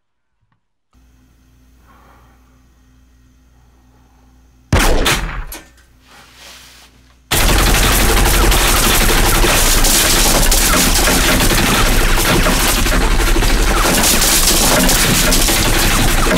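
Sustained automatic gunfire from submachine guns, a dense unbroken racket that starts about seven seconds in, with bullets punching through the walls of a dark enclosure. Before it a low steady hum, then a sudden loud bang with a fading tail about five seconds in.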